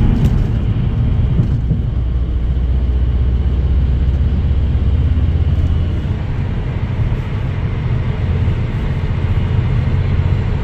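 Steady low rumble of road and engine noise heard inside a car cruising on a highway, easing slightly about six seconds in.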